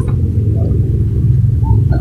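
A steady low rumble with no change in level, and no other sound on top of it.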